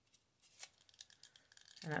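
Faint paper rustling with a few soft ticks as a book page is rolled up tightly between the fingertips.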